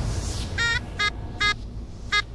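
Three short, high electronic beeps about half a second apart, a cartoonish sound effect, after a noisy swell fades out in the first half second.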